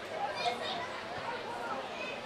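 Several distant voices calling and shouting across an open sports field during play, with no words that can be made out.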